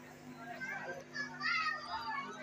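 Children's voices chattering and calling, growing louder after the first half second, over a steady low hum.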